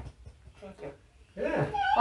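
A dog's short, high whine with a gliding pitch, starting about one and a half seconds in.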